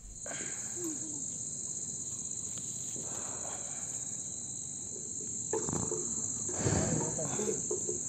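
Insects chirring in one steady, high-pitched drone over farmland, with faint voices in the background in the second half.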